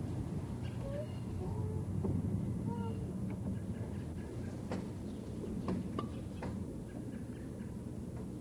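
A backyard swing squeaking in short, rising squeaks about every second and a half as it swings. A few sharp clicks follow about midway. A steady low hum runs underneath.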